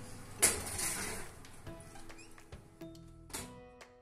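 Background music with sustained plucked notes. About half a second in comes a loud clatter and short scrape of a metal baking tray being slid onto an oven shelf.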